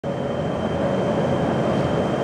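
Lit oxy-acetylene cutting torch burning steadily, a continuous hissing flame noise with a faint steady high tone over it.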